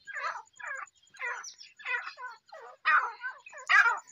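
Grey francolins (teetar) calling: a quick series of about ten short notes, two or three a second, loudest near the end.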